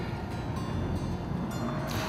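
Steady low rumble of wind and choppy river water around an open boat, with a short click near the end.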